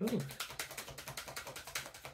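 Tarot deck being shuffled by hand: a quick, even run of soft card clicks and slaps, about ten a second.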